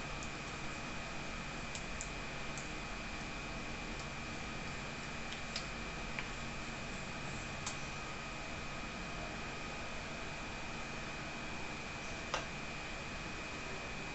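Steady room hiss with a faint high-pitched whine, broken by a few small sharp clicks and taps of small tools and pieces being handled on a worktable, the loudest near the end.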